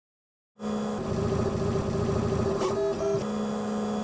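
3D printer stepper motors whining steadily as the print head moves, starting about half a second in, with higher tones added briefly near the three-quarter mark.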